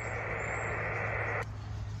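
Band noise from a Yaesu FT-817 HF transceiver in SSB receive: a steady, muffled hiss between overs, after the other station has stopped transmitting. It cuts off abruptly about one and a half seconds in, leaving only a low hum.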